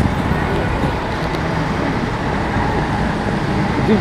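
Steady city road traffic noise, a continuous rush of passing cars.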